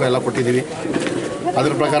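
A man talking, with a short quieter pause in the middle.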